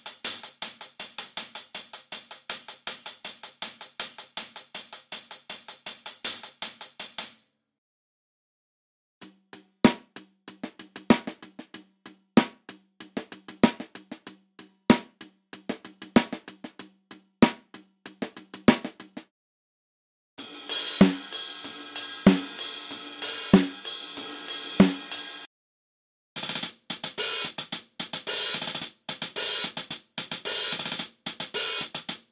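Sampled acoustic hi-hat and percussion loops played back one after another. First comes a fast run of bright hi-hat ticks. After a short silence there is a sparser loop with a heavier hit about every 1.2 seconds, then two more loops, each after a brief gap.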